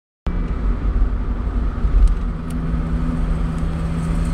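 Smart Roadster's three-cylinder engine running steadily while the car cruises, heard from inside the car: a steady hum over an uneven low rumble. A couple of faint ticks come about halfway.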